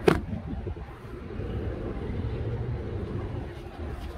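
A phone knocks once as it is set down on a hard surface, followed by a steady low outdoor rumble.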